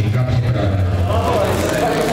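People's voices talking in a large hall over a steady low hum, which stops shortly before the end.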